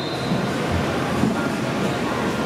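Steady rumble of a large reverberant indoor riding arena, with horses moving over the sand and faint distant voices.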